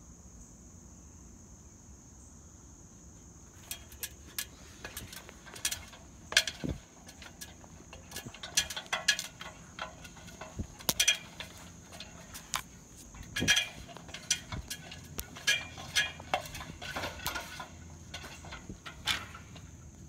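Metal extension ladder being climbed: irregular clanks and knocks of feet and hands on the rungs, starting about three and a half seconds in, over a steady high-pitched insect drone.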